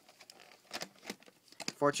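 Plastic VHS clamshell case being handled and closed by hand: a few light scattered clicks and faint rustling.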